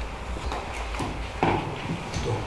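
Handling noise from a live handheld microphone as it is picked up and passed: a low rumble and a few short knocks, the loudest about a second and a half in.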